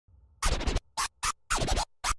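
Turntable scratching of a vinyl record: four short, choppy scratches. The first comes about half a second in, and the last, longer one sweeps up and down in pitch.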